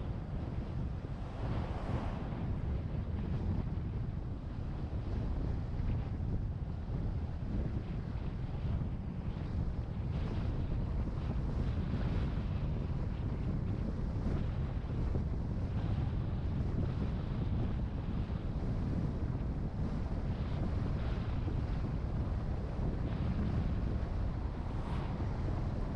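Wind buffeting the microphone of a camera on a moving bicycle, a steady low rumble.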